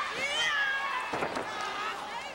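High-pitched shouting voices, then a wrestler's body hitting the ring mat with a thud a little over a second in.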